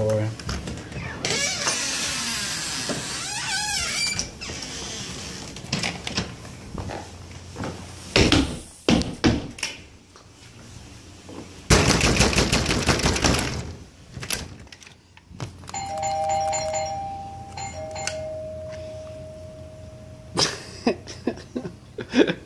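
A house door being handled and opened, with knocks, thumps and rustling. A steady high tone is held for a few seconds in the second half.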